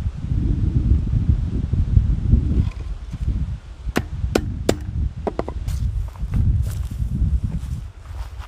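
Steel wire being bent by hand around metal pins, with a run of sharp metallic clicks and short pings from about four seconds in, over a low rumble.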